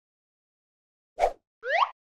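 Cartoon sound effects: a short pop a little past the middle, followed at once by a quick upward-sliding whistle.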